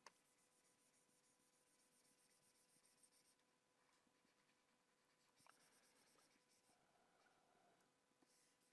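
Near silence: faint room tone with a faint steady electronic tone, and two stretches of faint, rapid, scratchy ticking.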